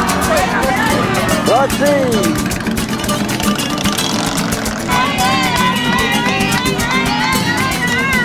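Loud music with singing and a steady beat, with crowd voices and a motorcycle engine running as the bikes ride slowly past.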